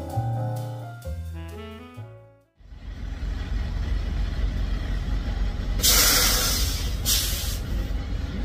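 Jazz music with saxophone fades out, then a truck's engine idles with a steady low rumble. Two short loud hisses come over it about six and seven seconds in.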